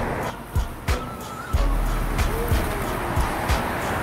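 Street ambience with music playing and traffic noise. A deep rumble of wind on the phone's microphone starts about a second and a half in, and there are several short handling knocks as the phone is turned round.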